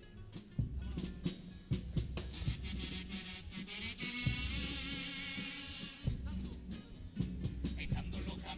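Cádiz carnival comparsa playing live on stage: bass drum and snare keeping a rhythmic beat under guitars, with the music swelling louder and fuller about halfway through.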